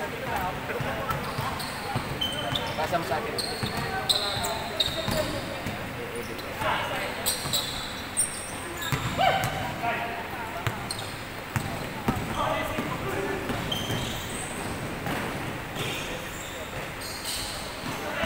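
Basketball bouncing on a gym court floor during play, with short high sneaker squeaks scattered throughout and players' voices in a large indoor gym.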